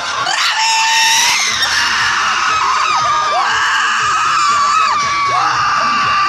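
Audience screaming in high voices, several long cries that drop in pitch as they end, over the dance-cover song playing on the speakers.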